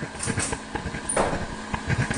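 Livescribe smartpen writing on paper, its tip scratching and tapping in small irregular strokes, picked up close by the pen's own built-in microphone.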